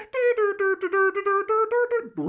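A man's voice vocalizing a quick run of about nine short notes on nearly the same pitch, like a hummed or sung 'dun-dun-dun', rising a little at the end.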